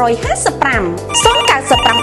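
Advertisement voice-over speaking quickly over music with a steady beat. A telephone ringtone sounds twice in the second half.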